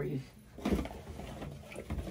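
A brief clatter about half a second in, followed by a second or so of handling noise in a small room.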